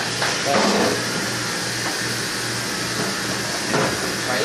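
Steady hum and hiss of restaurant dish-room machinery, with a few brief clatters of dishes and a rack, the loudest near the end.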